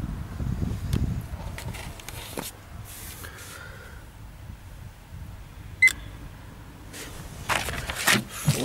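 A single short, high electronic beep from a Fluke 1625 earth ground tester about six seconds in, as its test finishes, over faint outdoor background. Paper rustles near the end.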